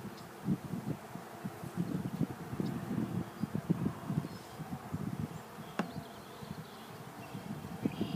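Honey bees buzzing around a frame held over an open hive, single bees passing close in uneven swells of hum. One sharp click sounds late on.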